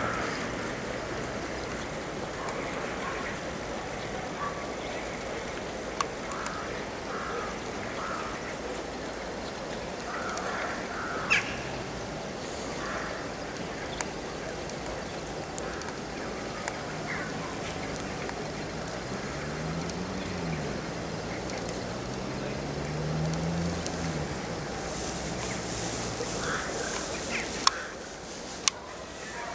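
Steady running noise from a Romanian class 060-EA electric locomotive, with a few sharp clicks and faint calls, possibly birds, over it.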